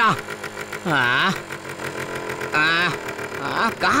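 Chainsaw idling steadily, with a man's two short questioning hums over it, the first dipping and rising in pitch.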